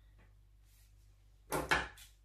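Scissors cutting through a length of cord: one short snip about one and a half seconds in, after a quiet stretch.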